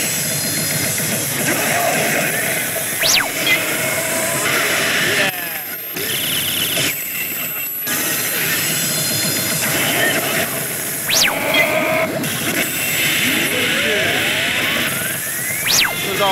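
Oshiro! Banchou 3 pachislot machine playing its feature music and sound effects over the constant din of a pachinko parlor. Sharp rising whooshes come about three seconds in and about eleven seconds in, and a longer rising sweep builds to a third one at the end.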